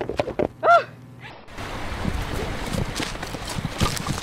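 A person's short cry, rising then falling in pitch, about half a second in, with scuffling as a reporter goes down on an icy road. Then an abrupt cut to a steady rushing noise of fast-flowing creek water.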